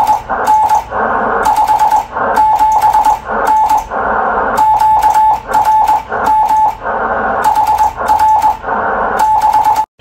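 Morse code (CW) being sent by hand on a telegraph key: a steady beep keyed into short and long elements, dots and dashes, with clicks from the key that come and go with the tone. It stops sharply just before the end.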